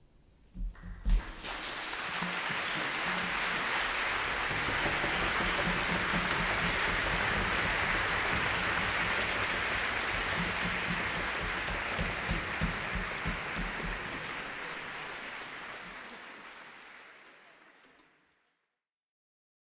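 Concert audience applause breaking out about a second in, a few sharp claps first, then dense steady clapping that fades out over the last few seconds.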